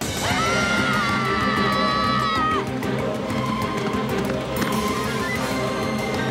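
Cartoon dinosaur characters screaming in one long held cry for about two and a half seconds, over loud background music that carries on after the scream stops.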